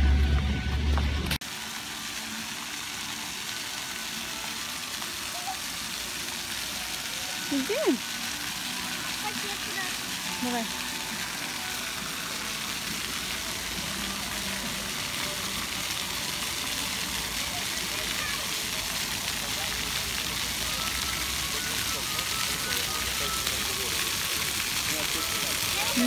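A pavement fountain's rows of water jets spraying and splashing in a steady hiss, with faint distant voices now and then. In the first second or so, before it, a short loud stretch of voice and music cuts off.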